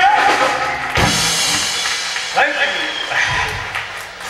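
Live band with drum kit and electric guitars closing a song: a loud final hit, a second crash about a second in, then cymbals and guitars ringing and fading. A couple of short shouted voices follow.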